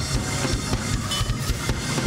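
Church praise music with a drum kit and bass drum keeping a fast, steady beat.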